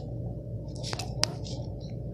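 Several short, sharp clicks and rustles from fingers handling something right at the microphone, over a steady low hum.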